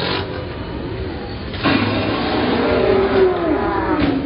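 Motorcycle engine revving during a wheelie, with a sudden louder burst of noise about a second and a half in as the bike goes down, followed by wavering rising and falling tones.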